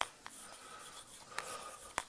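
Chalk writing on a blackboard: light scratching with a few sharp taps as the chalk meets the board, and a brief faint squeak about one and a half seconds in.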